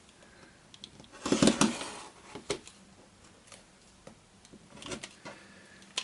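Acrylic quilting ruler and fabric block handled on a cutting mat while a block is squared up: a short scraping burst about a second and a half in, then a few light clicks.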